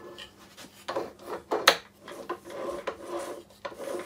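Metal tools and parts being handled at a lathe: a few sharp knocks, the loudest about one and a half seconds in, with rubbing and scraping between them.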